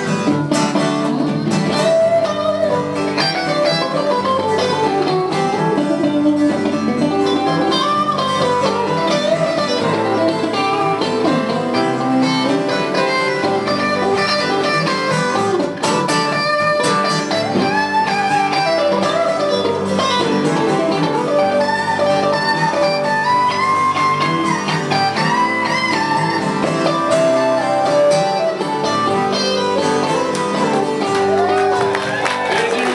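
Live band playing an instrumental break with electric and acoustic guitars and no singing, a lead line bending up and down over steady chords.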